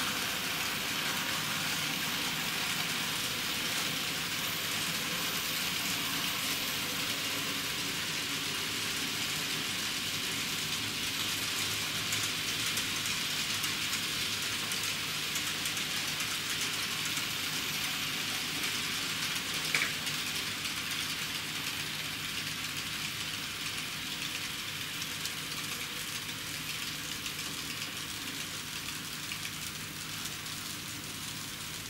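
N-scale model trains running through a staging yard and helix: a steady rolling rattle of small metal wheels on rail with motor hum, easing off slightly near the end. A single sharp click sounds about twenty seconds in.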